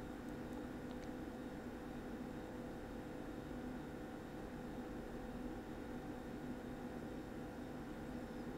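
Steady room tone: a low, even hiss with a faint constant hum, with no distinct sound events.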